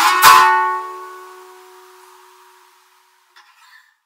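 The final chord of a song strummed on an acoustic string instrument about a quarter second in, left to ring out and fade away over a couple of seconds. A faint brief rustle follows near the end.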